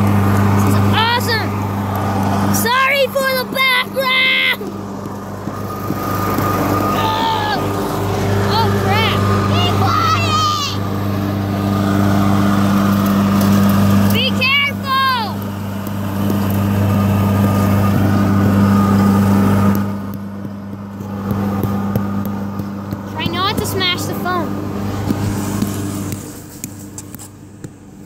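Lawn mower engine running steadily in the background, a loud low drone that drops away about twenty seconds in, with voices talking over it now and then.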